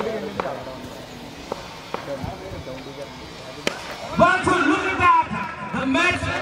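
A cricket bat striking the ball with one sharp crack about two-thirds of the way in, after a few fainter knocks. Men's voices follow right after it.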